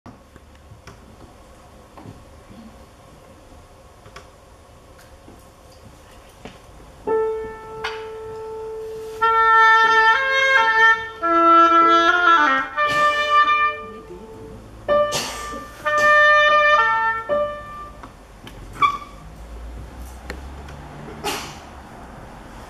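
Oboe and grand piano playing together: a piano chord about seven seconds in, then held, reedy oboe notes over the accompaniment, stopping at about eighteen seconds. Before the music only quiet room sound.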